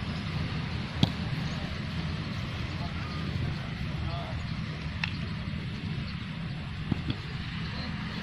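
A football kicked on a grass pitch: a few sharp thuds of foot on ball, about a second in, again mid-way and shortly before the end, over a steady rumble of wind on the microphone and faint shouts of the players.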